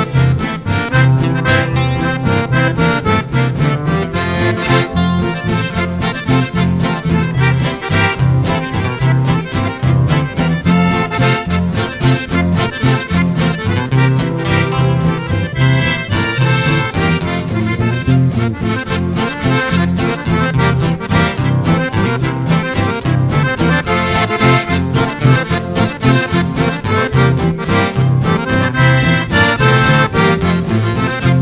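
Instrumental Argentine country waltz (valseado campero) led by accordion, over a steady, evenly pulsing bass accompaniment.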